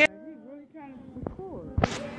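Hands knocking against a phone's microphone, loud at the very start and again near the end. Between the knocks there are faint, muffled voice sounds.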